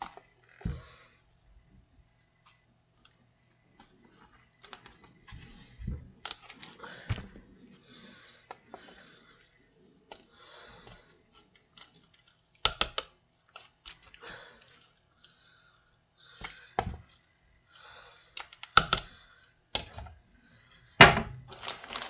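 Metal spoon scraping and tapping against a plastic mixing bowl and a plastic cup while soft pudding is scooped out and spooned in: irregular scrapes and clicks, with a few sharper taps in the second half.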